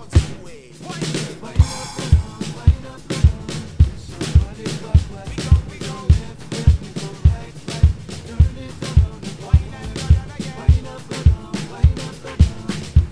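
Acoustic drum kit with Paiste cymbals played along to a song's backing track: after a short break with a rising sweep, the bass drum comes back in about one and a half seconds in and keeps a steady beat a little under two hits a second, with snare and cymbals over it.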